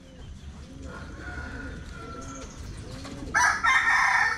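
A rooster crowing loudly, starting about three seconds in after a stretch of faint background sound.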